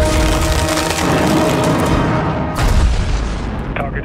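Film sound effects of a missile strike: deep booms and rumbling blast noise under a music score, with the heaviest boom a little past halfway, then dying away.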